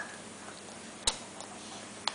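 A toddler eating small pasta by hand: a brief high squeak at the start, then a single sharp click about a second in.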